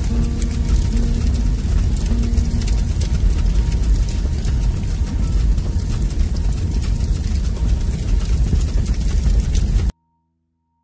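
Dark, ominous end-screen soundtrack: a loud, steady low rumble with scattered crackles and a few faint held musical notes in the first two or three seconds. It cuts off abruptly to silence just before the end.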